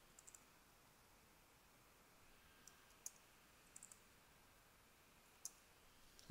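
Near silence broken by a few faint, sharp clicks of computer keys, singly and in quick groups of two or three.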